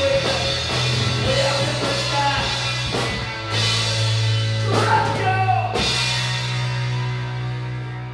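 Live rock band playing through a pub PA: electric guitars, bass, drum kit and a singing voice. The drum hits stop about six seconds in, leaving a held chord ringing on.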